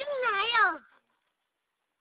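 A single high-pitched, wavering cry, rising and falling in pitch, lasting just under a second, then near silence.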